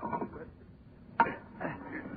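Men grunting with effort as they force a heavy coffin lid, with a sharp knock about a second in: a radio-drama sound effect, heard through the narrow sound of an old broadcast recording.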